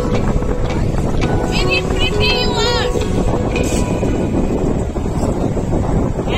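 A boat's engine runs steadily with wind noise on the microphone. Music plays over it, with held notes and a run of high chirping figures in the first half.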